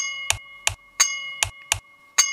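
Short end-screen jingle: a bright bell-like chime struck twice, about a second apart, each ringing on over a steady beat of sharp clicks and low thumps, about three a second.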